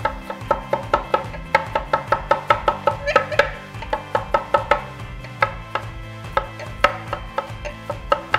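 Chef's knife chopping garlic cloves on a wooden cutting board: a quick, uneven run of sharp knife strikes, about three to four a second.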